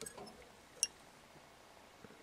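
Faint handling sounds of fingers peeling the thin plastic backing off a strip of Flexi-Film wrapped on a stainless tube fly, with a few soft rustles and one short sharp click just under a second in.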